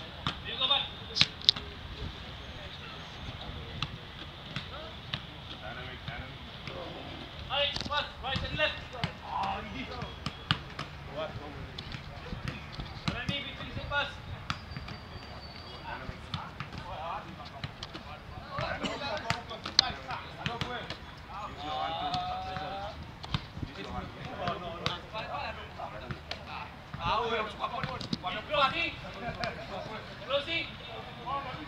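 Footballs being kicked and bouncing on a grass pitch: scattered sharp thuds throughout, with players' and coaches' shouts and calls in the background.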